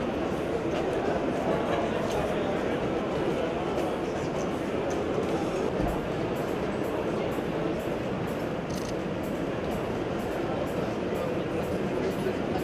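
Steady chatter of a large crowd, many voices blending together with no single speaker standing out.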